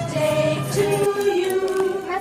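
Music with singing voices holding long, steady notes.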